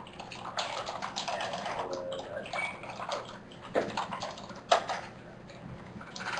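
Computer keyboard typing: a stretch of soft, noisy clatter over the first half, then two sharp clicks of keys being struck near the end.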